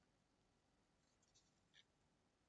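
Near silence: room tone, with a couple of faint, brief soft ticks in the second half.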